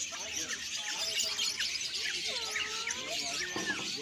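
Dense chorus of many caged birds chirping at once, with short high chirps overlapping without pause.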